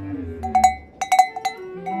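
Large hanging bell knocked by its wooden clapper, about six strikes in two quick groups, each ringing on one steady pitch.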